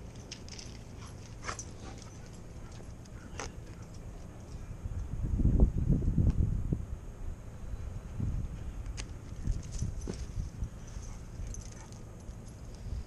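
Dogs at play during a game of fetch, with faint scattered ticks, and a stretch of low rumbling noise around the middle that is the loudest thing heard.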